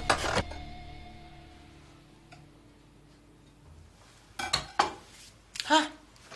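A sharp knock at the start, then a sustained music chord that dies away over about three seconds, followed by a few clinks of crockery a little after four seconds in.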